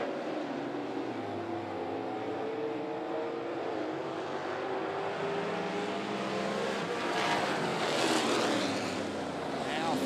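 V8 engines of dirt late model race cars running hard around a dirt oval, their pitch drifting up and down through the corners. The engines grow louder with rising and falling sweeps as cars pass, from about seven to nine seconds in.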